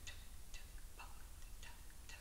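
Quiet room tone with a few faint, scattered small ticks and taps, about one every half second.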